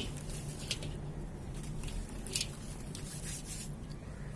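Wet dirt-and-cement lumps crumbled by hand into a metal basin of water: soft squishing, with a few short splashes and patters of falling bits, the sharpest at the start and about two and a half seconds in.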